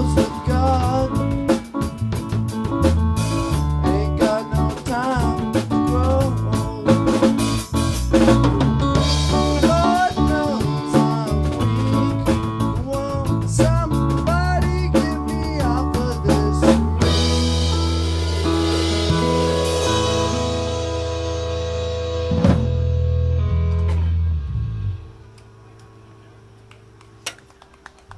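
Live rock band with acoustic guitar, electric bass, keyboard and drum kit playing out the end of a song, with sung lines over busy drumming. The drumming stops about 17 s in, a final chord is held with one more hit, and it cuts off about 25 s in, leaving a low quiet.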